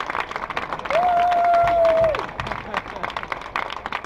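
Crowd applauding, the claps dense and continuous. About a second in, a single steady tone sounds for just over a second, louder than the clapping, then drops away.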